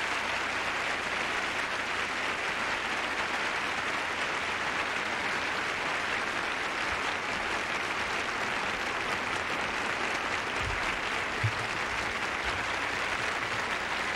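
Sustained applause from a large theatre audience: many hands clapping in an even, steady patter that holds at one level throughout.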